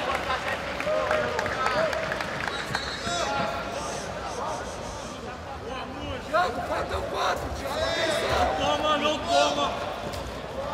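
A crowd of voices in an arena hall: several people talking and calling out over each other at once.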